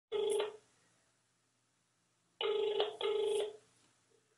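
Telephone ringback tone heard down the line by the caller: the end of one ring, then about two seconds later a double ring of two short, steady tones in quick succession, the Australian ring cadence.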